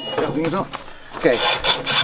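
A roll of barbed wire scraping and rubbing against the steel plate and spindle of a barbed wire dispenser as it is settled into place.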